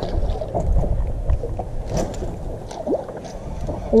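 Wind buffeting the microphone over small waves slapping against a boat's hull, a steady low rumble with a few light clicks scattered through it.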